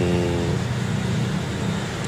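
A man's drawn-out hesitant 'um' trails off in the first half second, leaving a steady low mechanical hum.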